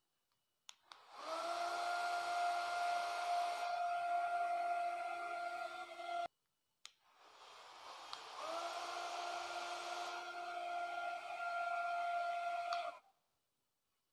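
Small DC motor of a homemade bottle vacuum cleaner on a toy robot running with a steady whine, rising in pitch as it spins up. It cuts off about six seconds in, starts again about two seconds later, and stops shortly before the end.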